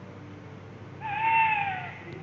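A single drawn-out animal call, held for just under a second about halfway through and dropping in pitch at its end, over a faint steady background.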